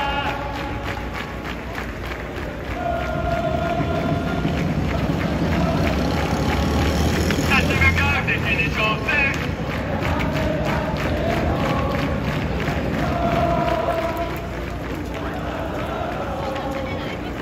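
A large crowd of football supporters chanting together, with long held sung notes and a louder swell of voices about halfway through.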